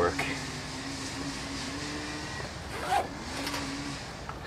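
Small engine of yard-work equipment running with a steady drone, dipping a little in pitch about halfway through and coming back up near the end.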